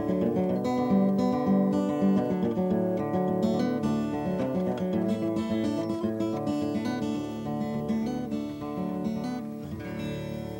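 Solo steel-string acoustic guitar fingerpicked in open D tuning, played left-handed and upside down with the strings left as for a right-hander. Quick picked notes over a ringing bass; the playing thins out and a final chord rings near the end.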